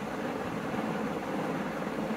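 Steady, even background noise with no distinct event in it.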